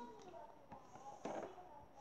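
Quiet room with faint handling noises on a tabletop: a few small clicks and one brief soft rustle a little over a second in.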